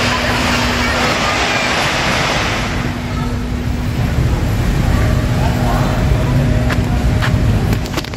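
Outdoor city ambience: steady traffic noise with wind rumbling on the microphone and people talking in the background.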